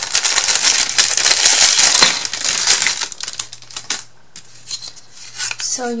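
Clear plastic bag crinkling and rustling as thin laser-cut wooden pieces are pulled out of it, with the pieces clicking and clattering against each other. The rustling dies down about three seconds in, leaving a few light clicks of wood being laid down.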